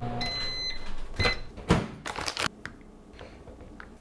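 Microwave oven ending its cycle: a beep of about half a second, a second short beep, then a clunk and a few sharp clicks.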